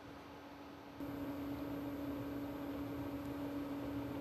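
Steady laboratory room tone with a constant equipment hum. It jumps abruptly louder about a second in and then holds steady.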